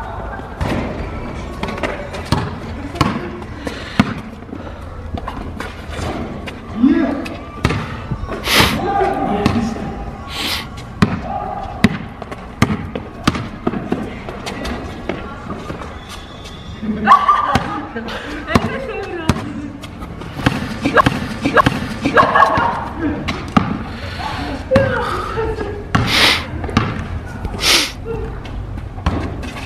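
Basketball bouncing on asphalt during one-on-one play: irregular sharp thuds of the dribbled ball and players' steps, mixed with bursts of the players' voices.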